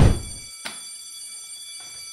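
An edited whoosh transition ends in a loud low thud at the very start. It is followed by a steady ringing tone of several high pitches held together, with a single click about half a second in.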